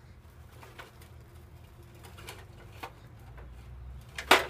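Faint cooing of a dove in the background, with a few faint clicks of a metal toy truck being handled on gravel.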